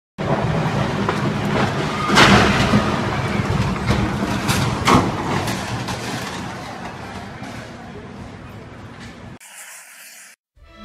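Loud, continuous street commotion with voices mixed into a rushing noise, broken by two sharp crashes about two and five seconds in, then slowly fading. It cuts off near the end and gives way to a short logo sting.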